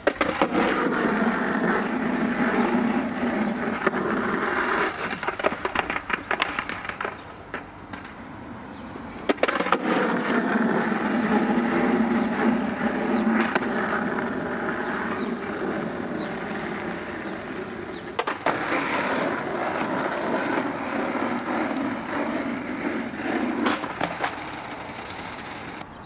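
Skateboard wheels rolling over rough asphalt in three long runs, with sharp clacks of the board hitting the ground where runs start and end.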